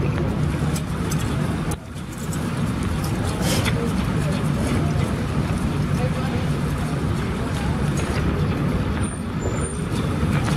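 Steady city street noise: a low traffic rumble with indistinct voices of people nearby, dipping briefly about two seconds in.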